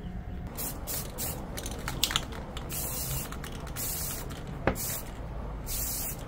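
Aerosol spray paint can spraying in a series of short hissing bursts, about half a second each, with a sharp click about three-quarters of the way through.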